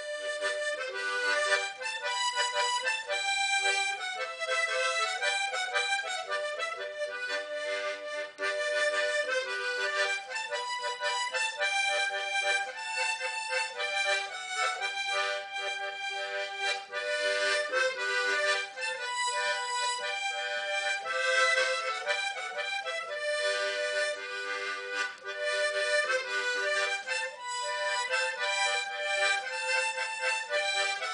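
Background music: a melody played on a free-reed instrument, moving through short held notes, with no bass underneath.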